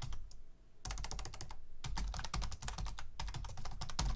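Typing on a computer keyboard: quick runs of keystrokes with a short pause about half a second in.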